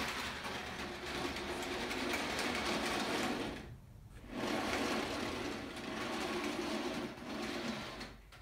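Small toy train cars being pushed by hand along a plastic track, their wheels making a steady rolling whir. The whir stops briefly about four seconds in, then starts again.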